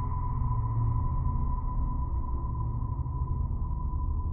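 Ambient electronic drone soundtrack: a steady high tone held over a dense low drone.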